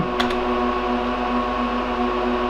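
Lenovo x3650 M4 rack server's cooling fans running with a steady whir and a steady hum-like tone, noisy enough that the owner tells it to hush. A short key click or two shortly in.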